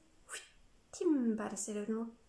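A woman's voice speaking light language: unintelligible flowing syllables with sharp hissing 's' and 'sh' sounds, ending in a drawn-out syllable that falls in pitch.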